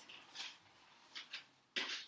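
A clear plastic bag being handled, giving several short crinkling rustles, the loudest just before the end.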